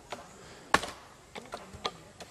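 A few sharp knocks of bamboo being handled and cut, with the loudest about three-quarters of a second in and two lighter ones in the second half.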